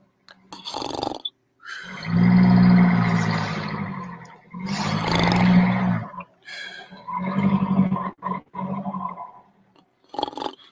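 A person's voice making three long, drawn-out vocal sounds with a steady pitch and no clear words, the loudest about two seconds in, with short hissy bursts before and between them.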